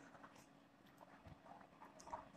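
Near silence, with a few faint scratches and taps of a ballpoint pen writing on notebook paper.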